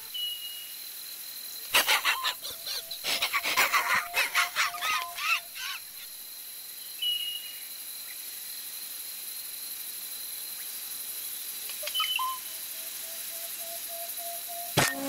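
Countryside field ambience: a steady hiss with short high bird chirps just after the start, at about seven seconds and at about twelve seconds. From about two to five and a half seconds comes a flurry of quick clicks and crackles over a pulsing tone, and the pulsing tone returns near the end.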